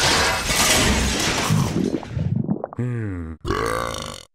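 Cartoon sound effects: a long noisy crash and clatter as a vending machine smashes down onto a monster's head and breaks. Near the end come two short, throaty, burp-like grunts from the dazed creature.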